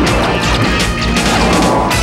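Science-fiction space-battle soundtrack: music under a rapid run of crashing laser-blast and explosion effects, several a second, over a low rumble.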